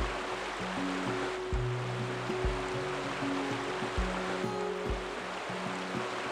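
A shallow river rushing steadily over rocks, under soft background music with held low notes and occasional low thumps.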